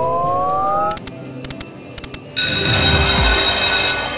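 Slot-machine sound effects: a rising electronic tone that cuts off about a second in, a few sharp clicks, then a loud ringing jackpot jingle with coins clattering from about two and a half seconds in.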